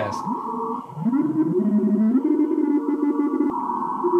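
Icom IC-7300 receiver audio as the dial is tuned across the 40-metre CW band: Morse code tones slide up in pitch and change as signals pass through, under a steady tone and band noise.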